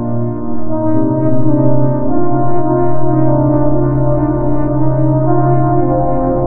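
Dark ambient drone music: layered sustained tones held steady, the chord shifting about a second in and again near the end.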